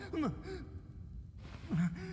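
A man's short sigh of dismay, falling in pitch, just after the start. A man's voice begins speaking near the end.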